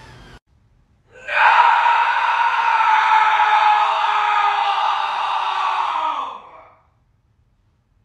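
One long, hoarse scream lasting about five seconds. It holds a high pitch, then slides down as it fades out.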